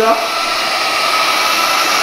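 Hutt C6 window-cleaning robot's suction fan running steadily, a whirring rush of air with a steady high whine, holding the robot against the glass while its spinning mop pads scrub.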